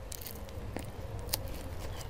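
Faint crackling and a few light clicks from hands handling the plastic wrap tied around a tree graft.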